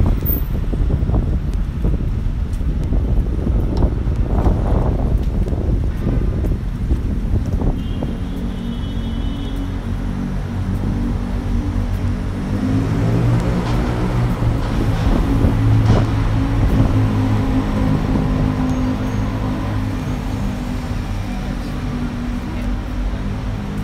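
City street traffic with wind buffeting the microphone at first, then the steady low drone of a double-decker bus's diesel engine running close by, swelling about halfway through.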